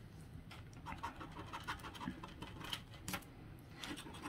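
Handheld plastic scratcher rubbing the silver coating off an instant lottery scratch ticket, in faint, short, irregular scratching strokes.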